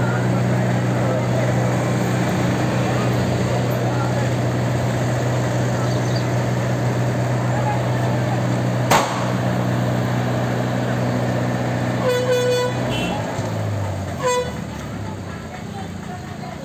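Vehicle horn tooting twice near the end, the first toot about half a second long and the second brief, over a steady low engine hum and voices. There is a sharp knock about nine seconds in, and the hum stops about thirteen seconds in.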